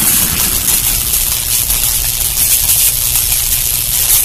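Cinematic intro sound effect: a steady low rumble with a bright hiss over it, with no voice or tune.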